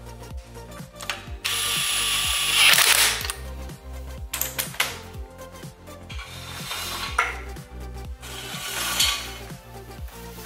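A cordless power tool whirring in bursts as lug nuts are run onto a wheel. The longest and loudest burst is about two seconds long, starting a second and a half in, with shorter ones near the end. Background music with a steady bass beat plays underneath.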